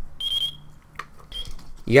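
FrSky Taranis Q X7 radio transmitter beeping in bind mode, the repeating signal that it is sending its bind request. There is a high beep about half a second long, then a shorter one about a second later, with a light click between them.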